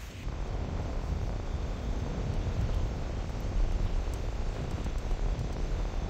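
Steady low rumbling noise, heaviest in the bass, setting in just after the start and holding evenly.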